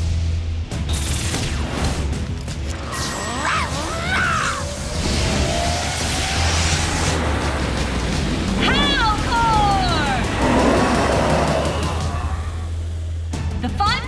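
Action-cartoon battle soundtrack: dramatic music over a steady bass, with whooshing and booming sound effects. Two gliding monster cries come through, one about four seconds in and another around nine seconds.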